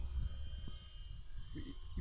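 Low wind rumble on the microphone with a faint steady high whine underneath; a man's voice starts a word near the end.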